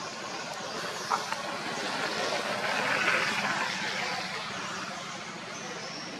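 Steady outdoor background noise that swells and fades over a few seconds, peaking about halfway, with two brief clicks just after a second in.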